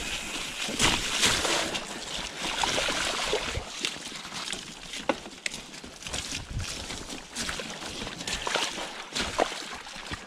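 Mountain bike tyres rolling through mud and standing puddles, splashing, with frequent short knocks and rattles from the bike over the rough, wet trail.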